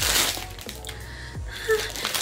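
Background music with a steady low kick-drum beat and a few faint held notes. A crinkling rustle fades out about half a second in.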